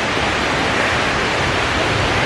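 Loud, steady rushing of water, an even noise with no rhythm or breaks.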